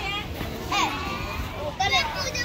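A group of children chattering and calling out, several high-pitched voices overlapping.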